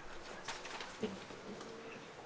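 Quiet room sounds of people moving at a lectern: a sharp knock about half a second in, then a short low squeak lasting under a second.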